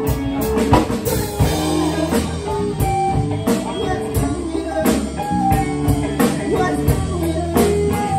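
Live band playing a blues-tinged soul number: electric guitars, electric bass and a drum kit, with a steady medium-tempo beat.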